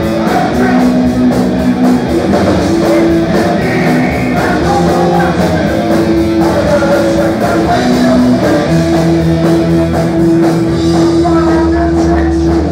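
Live rock band playing loud through the PA: electric guitars and bass holding sustained notes over a drum kit, with a steady cymbal beat.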